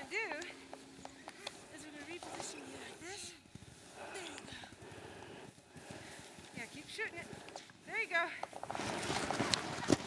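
Faint voices calling out in short rising-and-falling calls, over crunching footsteps in snow. A louder rush of noise comes near the end.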